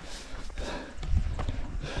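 Footsteps of a hiker walking on a gravel mountain trail: a few uneven soft steps and small clicks of stones underfoot.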